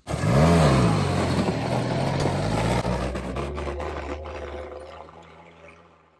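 Vintage off-road 4x4's engine revving up once, then running steadily as the vehicle drives away, fading gradually over the last few seconds.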